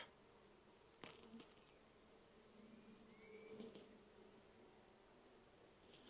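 Faint steady hum of honeybees from an open nuc hive and the frame lifted above it, with a light click about a second in.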